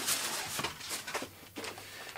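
Soft poly wrapping and plastic bag rustling and crinkling as they are handled, with a few short sharper crackles through it.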